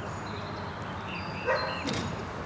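A dog gives one short bark about one and a half seconds in, with a sharp click just after it.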